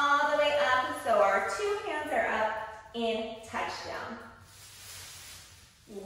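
A woman speaking in several short phrases, then, about three and a half seconds in, a softer, even noise with no voice in it.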